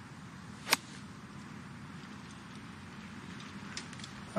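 Golf wedge striking the ball on a fairway approach shot: one crisp, sharp click about three-quarters of a second in, over a faint steady outdoor background.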